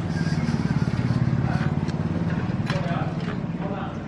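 Small motor scooter engine running as it passes close by, loudest about a second in and then fading.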